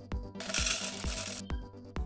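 Background electronic music with a steady beat, about two beats a second, and a bright, hissing sound effect that starts about half a second in and lasts about a second.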